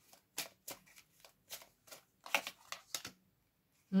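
A deck of tarot cards being shuffled by hand: a dozen or so quick flicks, about three or four a second, that stop about three seconds in.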